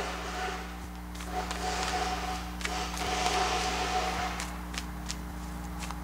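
Machinery running nearby where someone is at work: a steady hum throughout, with a steady whine from about one second in to past four seconds, and a few light clicks.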